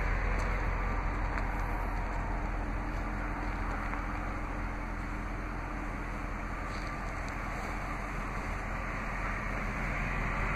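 The 4.7-litre PowerTech single-overhead-cam V8 of a 2002 Jeep Grand Cherokee idling steadily, heard from the exhaust.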